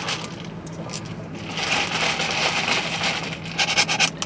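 Paper straws scraping through the plastic lids of iced coffee cups and stirring the drinks: a soft rubbing, scraping rustle that grows stronger about a second and a half in.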